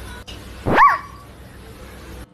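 A single short, high animal cry just under a second in, sweeping sharply up and then falling away.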